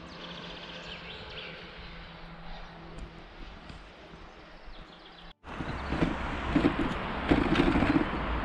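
Outdoor ambience with a faint steady hum. After a cut about five seconds in comes a louder rush of wind on the microphone, with rumbling tyre noise from a bicycle rolling along an asphalt lane.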